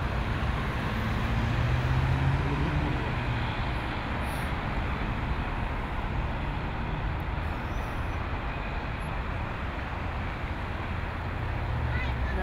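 Road traffic on a city street: a steady rush of passing cars, with a vehicle's low engine hum louder in the first few seconds and again near the end.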